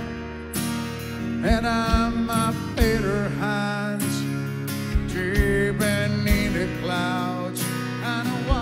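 Live acoustic guitar being strummed while a man sings into a microphone, with a low kick beat thumping in time, as from a one-man-band foot drum.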